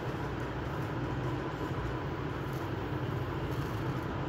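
Steady low rumbling background noise with a faint thin steady tone above it, unchanging throughout.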